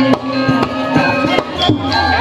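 Balinese gamelan music: bronze metallophones ringing held notes, cut through by sharp percussive strikes several times a second.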